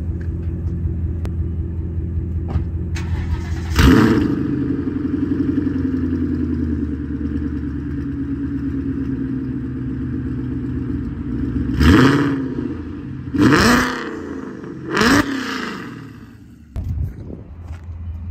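Boosted 2014 Ford Mustang GT 5.0 V8 with Dynatech longtube headers and Borla exhaust, idling, then revved once about four seconds in and held at a raised, unsteady idle. Near the end come three quick revs, after which the engine sags sharply: the car keeps blowing off its charge pipe under boost.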